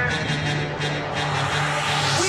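Transition sound effect in a dance routine's mixed soundtrack played over an auditorium sound system: a steady low hum with a rushing noise that builds up near the end, leading into the next music track.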